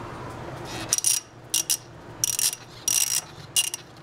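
Half-inch-drive ratchet with a 15/16-inch socket clicking in five short runs, one every half second or so, as it is swung back and forth to unscrew an oil pressure switch from the engine.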